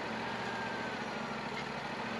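Wood-Mizer LT40 portable sawmill's engine running steadily at idle, an even hum with no change in speed.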